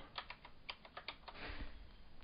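Computer keyboard being typed on: a run of faint, quick, irregular key clicks.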